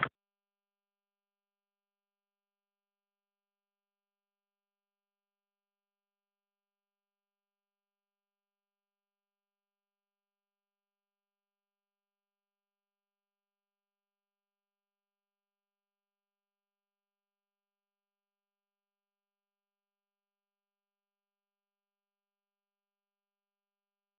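Silence: the sound track is empty.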